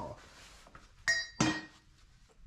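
Two sharp metallic clinks about a third of a second apart, each ringing briefly, as hard metal pieces knock together.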